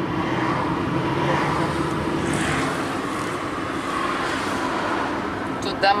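Road noise inside a moving car: a steady rumble of engine and tyres with a faint low hum, and traffic outside.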